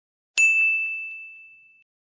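A single bright ding, a logo-sting sound effect: one clear high tone struck about a third of a second in that rings and fades away over about a second and a half, with a few faint ticks just after the strike.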